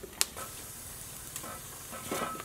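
Wood fire burning under a wok and lidded pot: a steady hiss with a sharp crackle about a quarter second in and a smaller pop later.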